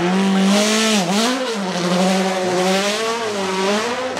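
Racing car engine held at high, steady revs, with a brief dip and rise in pitch about a second in.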